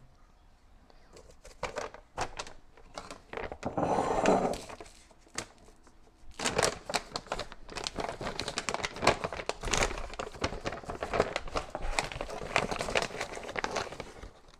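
Plastic stand-up pouch of granulated erythritol crinkling and rustling as it is handled and a measuring cup is scooped into it, with a louder rustle about four seconds in and steady crackly rustling through the second half.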